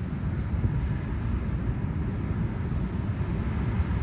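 Wind blowing on the microphone outdoors: a steady low rumble that flickers unevenly, with a faint hiss above it.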